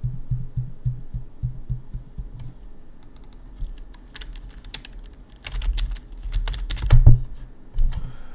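Typing on a computer keyboard: a quick, even run of key clicks for the first couple of seconds, then scattered key presses, loudest about seven seconds in.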